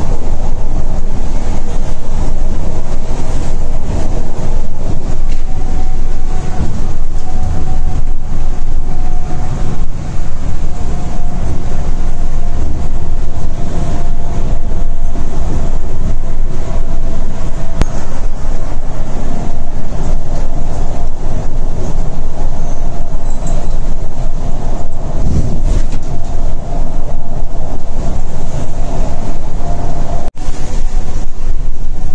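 Cabin noise of a Volvo B11R coach cruising at highway speed: a loud, steady rumble of engine, tyres and road, heaviest in the low end, with a faint wavering whine above it.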